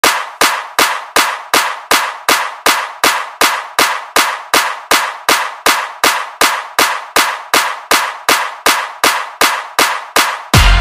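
Intro of a hardstyle track: one sharp, noisy percussion hit repeating evenly, about three times a second, with no bass or melody under it.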